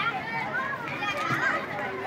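Outdoor crowd chatter with children's voices calling and talking over one another.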